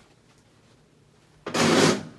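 Quiet room tone, then a brief loud rustling scuff, about half a second long, near the end.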